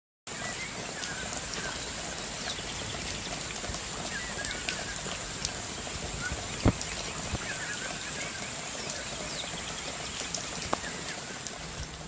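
Forest ambience: a steady rushing hiss with a thin, steady high-pitched tone, birds chirping briefly a few times, and scattered light clicks, one louder click about two-thirds of the way in.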